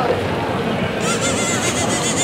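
A rapid run of short, high, harsh calls from a bird, starting about a second in, over the steady murmur of a busy pedestrian street.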